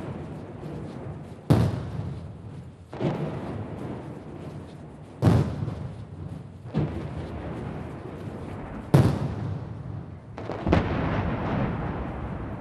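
Ceremonial gun salute: saluting cannons fire six salvos, one every one and a half to two seconds, each a sharp blast with a long echoing tail.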